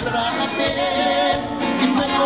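Live Mexican banda music at full volume, with a trumpet section and sousaphones playing.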